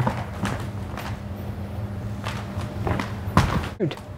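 Footsteps and light thuds of a person moving and stepping on a wooden floor, a handful of separate knocks with the loudest near the end, over a steady low hum.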